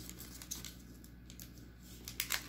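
Faint, scattered crinkles of a foil Pokémon booster pack wrapper being handled and pulled open, over a low steady hum.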